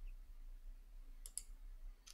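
Quiet room tone with a steady low hum, and two faint quick clicks close together about a second and a quarter in.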